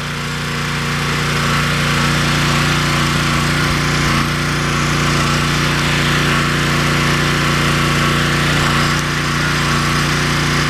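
Pressure washer running steadily, a low even hum under the loud hiss of its high-pressure jet spraying the cart's dump bed and wooden side boards. The hiss swells over the first couple of seconds.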